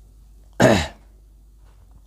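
A man clears his throat once with a short cough, a little over half a second in.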